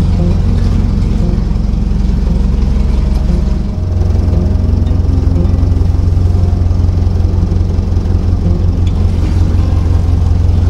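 Narrowboat's diesel engine running steadily at cruising speed with a low, even note. The note shifts slightly about four seconds in.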